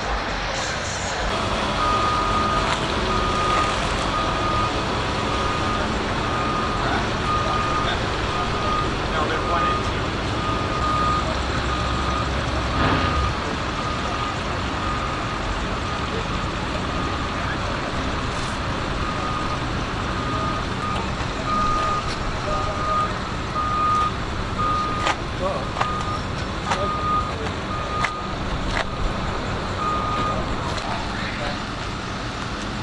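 A vehicle's reversing alarm, a single high beep repeating evenly about one and a half times a second, with a short break about halfway, over background voices.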